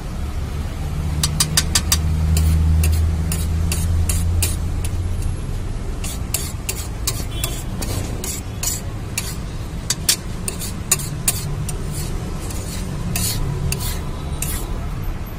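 A flat metal spatula scraping and clacking against a large steel griddle as thick ragda is stirred and mixed, in quick irregular clicks, with food sizzling. A low rumble runs underneath, loudest in the first few seconds.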